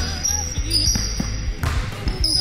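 A basketball being dribbled on a hardwood gym floor, several quick bounces, with high sneaker squeaks as the players shuffle and cut on the court.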